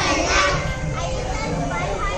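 Many children's voices at once, calling out together during an outdoor circle game.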